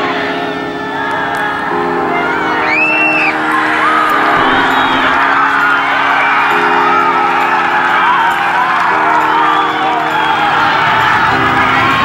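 Background music of sustained chords that change every couple of seconds, over a crowd cheering, shouting and whooping as a kick at goal goes over.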